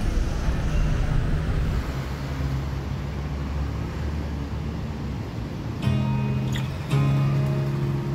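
Background music: a quieter instrumental stretch, then sharply struck chords about six and seven seconds in.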